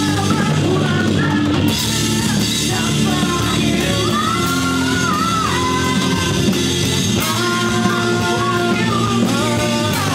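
Rock band playing a song: electric guitars, drum kit and keyboard under a male lead vocal.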